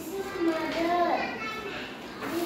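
A young boy's high-pitched voice speaking in short phrases, reciting a prepared talk.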